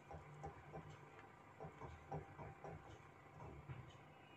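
Faint, light irregular ticks, about three a second, of a silicone whisk stirring a milk and chickpea-flour mixture in a saucepan.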